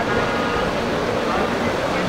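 Steady hubbub of a large crowd at a busy open-air street market: many voices blending together with traffic noise.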